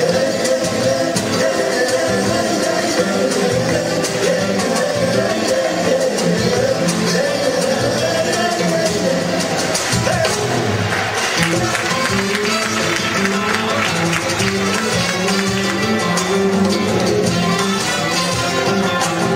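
A live mariachi-style band playing a ranchera: trumpets, violins and guitars, with two singers on microphones.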